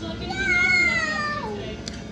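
A young child's long, high-pitched vocal sound that slides slowly down in pitch, followed by a sharp click near the end.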